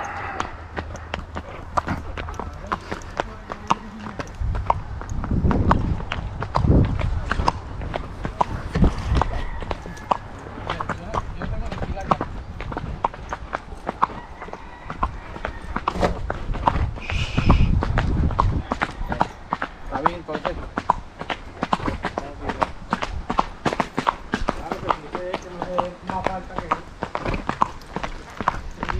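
A ridden filly's hooves striking an asphalt road in a quick, even run of hoof beats at a walk.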